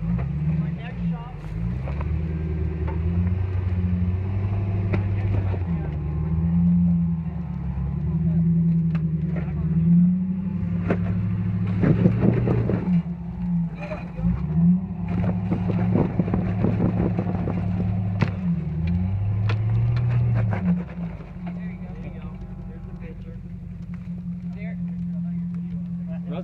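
Lifted Jeep Grand Cherokee WJ on 42-inch tyres crawling a steep rock climb: the engine revs up and down in repeated surges, with tyres spinning and scrabbling on rock and dirt around the middle. Near the end it drops back to a low, steady idle.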